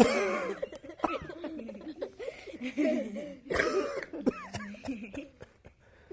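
A man and a group of children laughing, with coughing bursts mixed in as the man recovers from nearly swallowing the egg that popped out of the flask.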